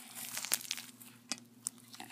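Cottontail rabbit skin being pulled off the carcass by hand, the hide tearing away from the meat in faint, irregular crackles and ticks.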